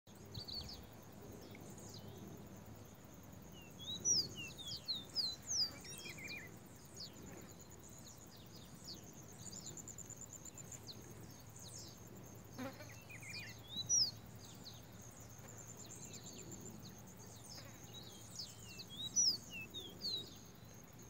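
Caboclinho seedeater singing: quick clusters of short, sharp whistled notes about four seconds in, again around fourteen seconds and near the end, over a steady high insect buzz.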